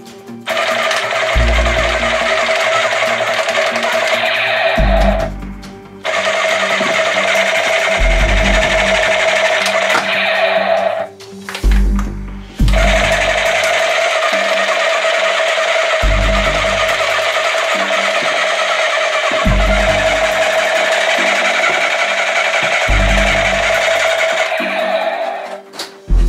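Battery-powered toy "Scatter-Gun" machine gun playing its electronic firing sound: a rapid rattle over a steady tone, in three long bursts that start and stop abruptly. Background music with low bass notes runs underneath.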